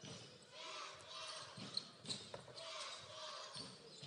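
A basketball being dribbled on a hardwood court, a few single bounces about half a second apart, over the murmur of an arena crowd.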